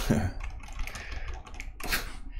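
Typing on a computer keyboard: a quick run of key clicks, with a louder keystroke near the end.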